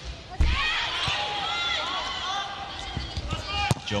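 Indoor volleyball rally: the thud of a serve about half a second in, shoes squeaking on the court, and a sharp hit of the ball near the end.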